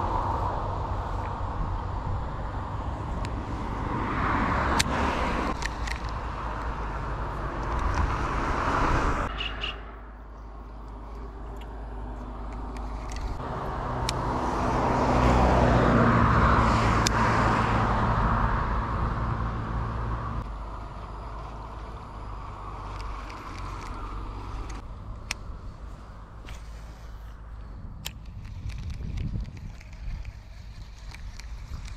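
Road traffic passing close by: a loud swell of vehicle noise that fades about ten seconds in, then another vehicle with a steady engine hum that builds, is loudest around the middle, and dies away. A few light clicks come through along the way.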